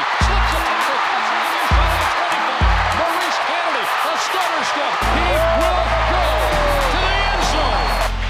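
Background music with heavy bass hits, turning to a steady bass line about five seconds in, mixed with a roaring stadium crowd cheering and a play-by-play announcer's excited call during a long punt return.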